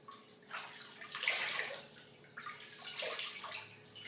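Hands splashing and scooping water in a large ceramic washbasin, rinsing honey cleanser off the face, in a few irregular bursts, the loudest a little over a second in.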